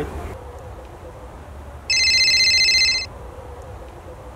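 A mobile phone ringing: one burst of a fast-trilling electronic ring, about a second long, starting about two seconds in.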